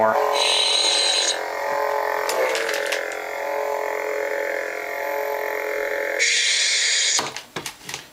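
Lightsaber soundboards playing a steady electronic hum through their speakers. A high hissing power-down effect plays about half a second in as the first blade retracts, and another plays near the end, after which the hum cuts off.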